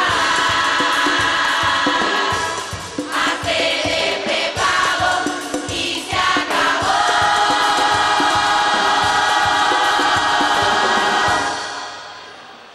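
A women's murga chorus singing in full voice over drum beats. The middle of the passage breaks into short phrases, then the voices hold a long final chord that dies away near the end.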